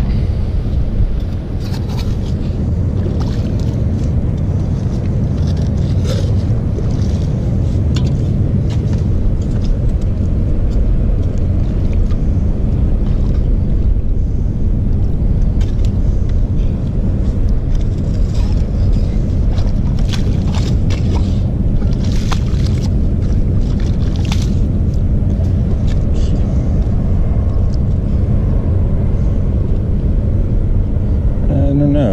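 Steady low rumble of wind buffeting the microphone on an open beach, with short scrapes and clicks now and then.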